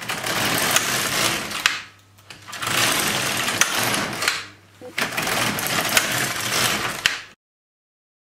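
Silver Reed LK150 knitting machine carriage pushed across the needle bed, knitting rows. There are three passes of about two seconds each, a noisy sliding sound with scattered clicks, with short pauses between them.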